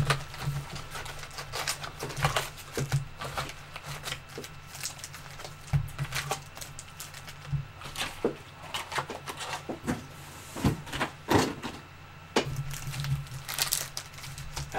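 Boxes of trading cards being handled and unpacked: irregular taps, scrapes and crinkles of cardboard and wrapping, over a low steady hum.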